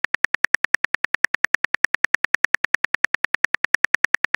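Rapid, evenly spaced keyboard-tap clicks of a phone messaging app as a message is typed out, about eight or nine short ticks a second.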